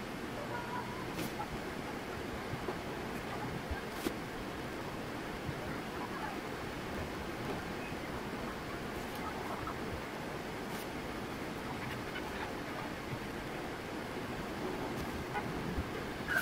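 Steady background hiss of room tone, with a few faint clicks scattered through it.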